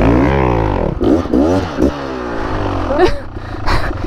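Dirt bike engines revving up and down under load on a steep, loose uphill trail, the pitch rising and falling with the throttle several times.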